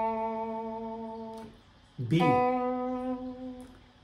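Guitar playing single plucked notes of the B minor pentatonic scale, each left to ring and fade. An A rings for about a second and a half, then about two seconds in a slightly higher B is plucked and rings out.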